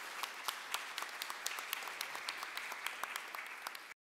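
Audience applauding steadily, a dense patter of many hands clapping that cuts off suddenly just before the end.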